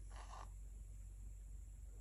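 A wooden craft stick scraping briefly inside a plastic cup of paint in the first half-second, then quiet room tone with a steady low hum.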